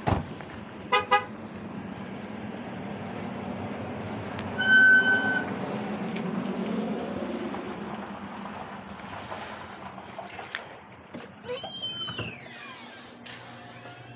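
Two quick car-horn toots about a second in, typical of a car being locked, then a louder single electronic beep around five seconds. Near the end comes a creaking, squeaky door swinging open.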